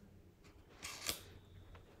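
A faint, brief scraping rustle about a second in, over a low steady room hum.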